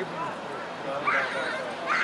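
Scattered shouting voices of players and spectators at a soccer game, with short sharp calls about a second in and again near the end.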